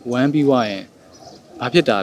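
A man speaking Burmese in an interview, in two short phrases with a pause between them.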